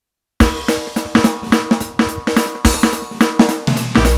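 Electronic keyboard's Dixieland quickstep backing track starting up: after a brief silence, a drum-kit intro of snare, bass drum and cymbals in a fast, even beat with chord tones underneath.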